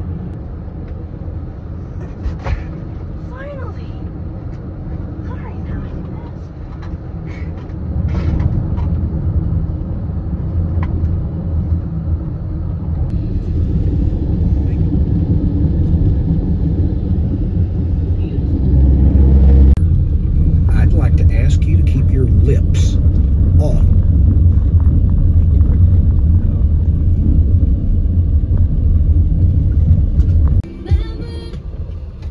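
Car road noise heard from inside the cabin while driving: a loud, steady low rumble of engine and tyres. It steps up louder about eight seconds in and again a little before the twenty-second mark, with scattered clicks and rattles in the last third.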